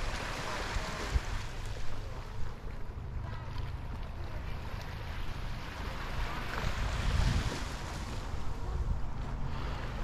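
Wind buffeting the microphone, a gusty low rumble, over the soft, steady wash of small waves on the shore.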